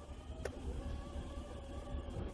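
Vehicle engine idling in the background: a steady low rumble with a faint wavering whine. A single sharp click about half a second in.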